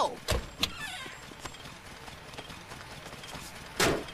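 Cartoon car sound effects: two short thumps within the first second and a brief rasp, then a quiet stretch, and a sudden loud crash near the end as the car hits a pole.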